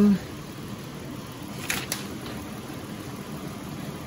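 Ford 4.0-litre V6 idling steadily, heard from beside the truck, with a brief rustle a little under two seconds in.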